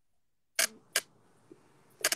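Two short, sharp clicks close to the microphone, about half a second in and 0.4 s apart, in an otherwise quiet pause.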